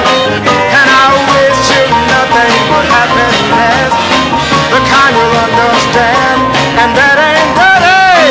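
A soul record playing: a singer over a full band with a steady beat.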